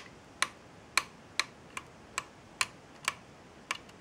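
Tilt mount of a Digitus Optidome Pro DN-16043 dome camera clicking as the lens section is tipped by hand: about eight sharp clicks, roughly two a second, as a small row of teeth passes the plastic pawl that locks each step.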